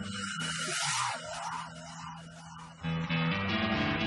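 Background music: steady low held notes under a noisy wash for the first second or so. It eases off, then swells up louder about three seconds in.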